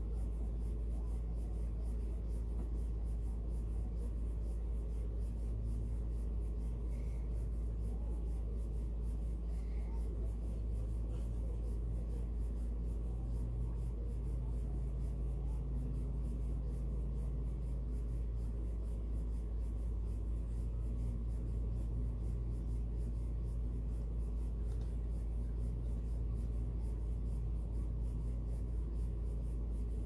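Paintbrush strokes scratching lightly on the bare wood of a small wooden birdhouse, over a steady low hum.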